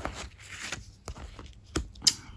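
Oracle cards being handled as one is drawn from a fanned spread: a few short card snaps and slides, the loudest near the end.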